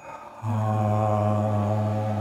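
A man's voice exhaling through an open mouth in a long, steady, low chanted 'ahh' that starts about half a second in and holds one pitch. It is a qigong healing-breath sound, used to release tension and calm the liver's energy.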